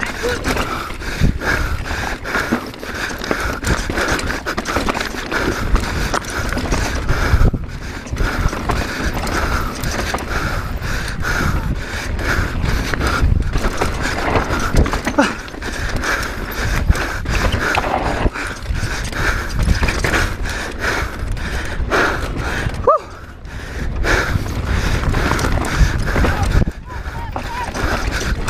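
Mondraker Dune R mountain bike clattering and rattling continuously as it rides fast down a rocky trail, with dense knocks from the wheels and frame over stones and a steady rumble of air over the microphone. The clatter eases briefly twice, about a third of the way in and again near the end.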